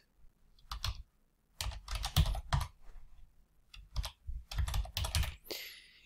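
Computer keyboard typing: separate key presses in a few short bursts with pauses between them.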